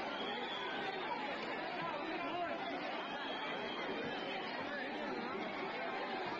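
Large crowd of people talking and calling out at once, an even babble of many overlapping voices.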